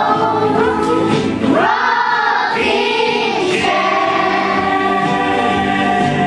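A group of young girls singing a song together over instrumental backing music, with held, gliding sung notes.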